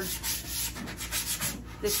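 Fine-grit sanding pad rubbed by hand along the edge of a round wooden board in quick, repeated back-and-forth strokes.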